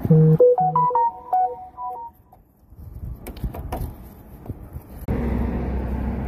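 A short electronic jingle of quick pitched notes lasting about two seconds, then a few faint clicks and knocks. A steady low hum comes in near the end.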